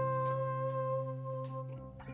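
Background instrumental music with long held notes, fading out near the end, with a few faint clicks over it.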